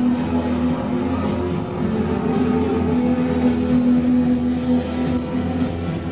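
A live band playing, recorded from the audience: electric guitar and keytar over a steady, sustained low tone.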